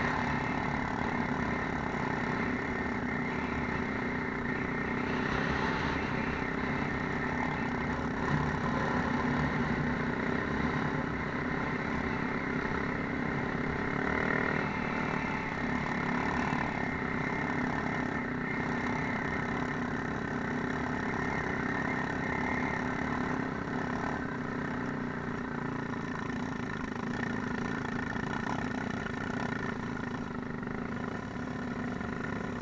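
Off-road vehicle engines running steadily while riding a rough dirt track, with a sport quad bike (ATV) just ahead; the engine note holds an even pitch with small rises and falls.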